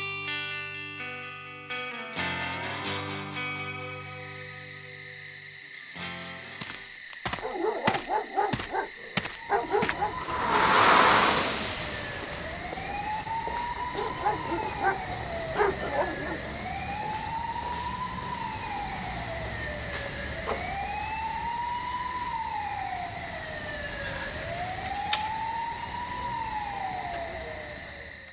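Electric guitar picking a few clean notes, which stop about six seconds in. Then a siren wails, sweeping up and down about once every four seconds, with a short loud rush of noise around eleven seconds in and a brief laugh a few seconds after that.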